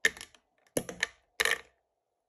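Ice cubes dropped into a plastic blender jar of milk and chocolate, landing in three clattering drops in quick succession.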